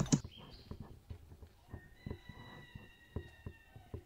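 Light knocks and clicks as a wooden donkey pack saddle (bât) and its straps are adjusted on the animal's back. A faint, steady high tone sounds for about a second in the middle.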